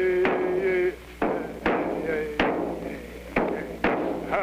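A chant with one voice holding long, steady notes that slide at their starts, over sharp, irregularly spaced percussion strikes.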